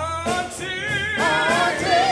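Gospel singing: a voice slides up into a note at the start and then holds notes with a wide vibrato, over a steady sustained instrumental accompaniment.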